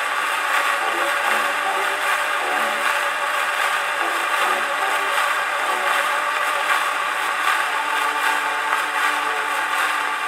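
An old acoustic-era 78 rpm shellac record plays back through a large gramophone horn. Its steady surface hiss and crackle are the loudest part, with faint low singing and accompaniment underneath.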